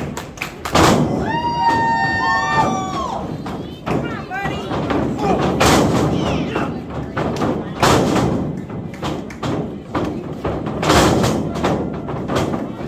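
Wrestlers' bodies hitting a wrestling ring's canvas mat, a string of heavy thuds with the loudest about a second in and again near six, eight and eleven seconds. Spectators shout and call out between them.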